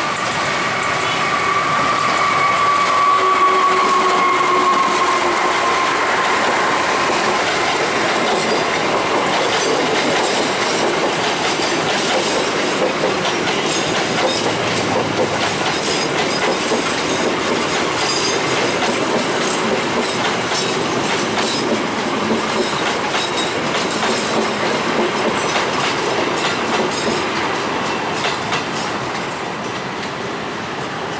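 Diesel-hauled intercity passenger train passing close by, its wheels clattering over rail joints. At the start a tone from the passing train slides slowly down in pitch and fades away over the first several seconds.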